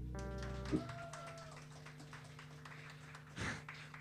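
A live band's amplified instruments hold a last sustained chord that cuts off abruptly under a second in. A faint bending tone then fades out, and a low steady amplifier hum remains.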